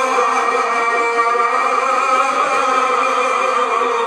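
Two male reciters chanting a devotional lament (nauha) together into a microphone, holding long, drawn-out wavering notes without a break.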